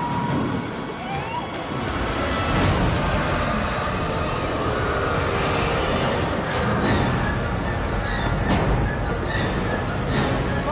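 Film sound mix of a tornado: a dense, continuous rumble of wind with several crashes of debris, under dramatic music.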